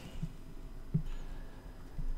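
Faint strokes of a felt-tip marker writing on a white board, with a soft knock about a second in, over a low room hum.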